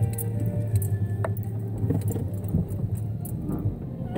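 Steady low hum of a car moving slowly, heard from inside, with music playing and a few small clicks and rattles.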